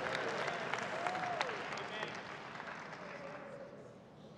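A church congregation applauding, with a few voices calling out early on, the applause fading steadily away.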